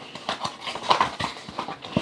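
Small paperboard box being opened by hand: irregular light taps, scrapes and rustles as the end flap is worked open.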